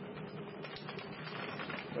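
Quick, irregular small clicks and rattles of something being handled, over a steady low electrical hum.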